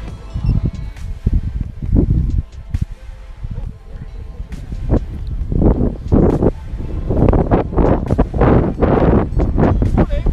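Wind buffeting the camera microphone in irregular gusts, heavier and more frequent in the second half.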